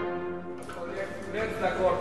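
A symphony orchestra breaks off a held chord, the sound dying away in the hall within about half a second. A man's voice then begins talking.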